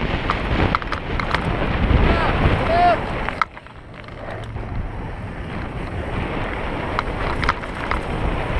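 Mountain bike ridden fast over dirt singletrack: tyre roar, rattling chain and frame clatter, and wind on the helmet-mounted microphone. A little over three seconds in, the rattle drops off suddenly as the bike rolls onto smooth pavement, then the noise slowly builds again.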